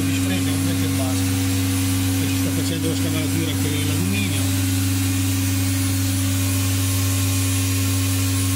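COSMEC FOX 22 S CNC machining centre running with a steady, unchanging hum.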